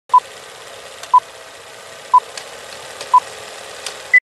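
Four short electronic beeps of the same pitch, one a second, over a steady hiss with a few faint clicks: the audio sting of a recording studio's logo.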